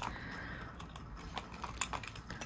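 Faint handling noise: a gloved hand picking up and turning a jointed fishing lure, with a few light clicks, one about one and a half seconds in and another just before the end.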